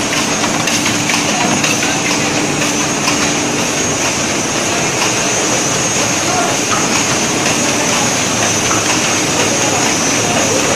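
Sheet-fed offset printing press with an anilox coating attachment running: a loud, steady mechanical clatter of rollers and gripper chain, with a constant hum and a high hiss over it.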